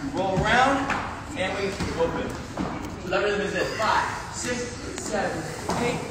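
Speech: a voice talking throughout, the words not made out.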